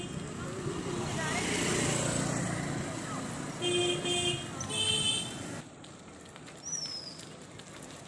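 A motor vehicle horn toots twice, about four and five seconds in, each blast about half a second long, over street traffic noise.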